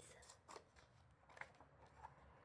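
Faint paper rustle of a picture-book page being turned by hand, with two soft clicks about half a second and a second and a half in.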